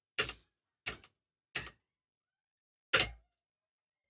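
Four short, sharp clicks of computer controls being worked at the desk. The first three come about two-thirds of a second apart, and the last follows after a longer pause near the end.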